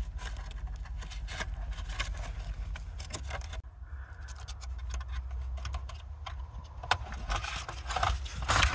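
Plastic clicks and scrapes from handling a 2007 VW Jetta's body control module and its wiring harness as its retaining tabs are pushed outward to let the module drop down. Scattered short clicks throughout over a steady low rumble.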